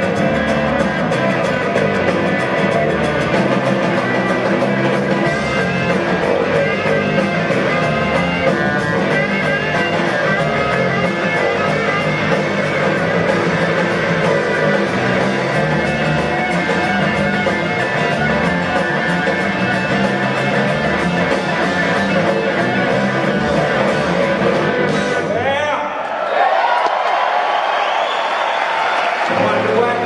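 Live three-piece roots-rock band playing an instrumental passage: electric guitar over electric bass and a drum kit. About four seconds before the end the bass and drums drop out for a few seconds, then the full band comes back in.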